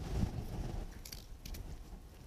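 Faint rustling of leafy lilac branches being handled and set into a vase, with a few soft clicks in the middle.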